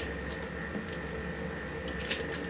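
Steady low hiss and hum of a small kitchen with a faint constant high whine, and one light tap near the end as a sausage is laid on the electric grill's plate.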